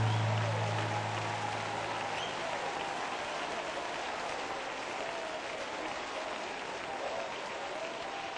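A congregation applauding between worship songs, the last low note of the music fading away over the first couple of seconds. A few voices call out over the clapping.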